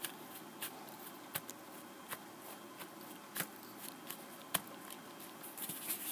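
Faint handling of card stock: hands pressing and shifting glued paper pieces on a cardstock tag, with scattered light taps and soft rustles.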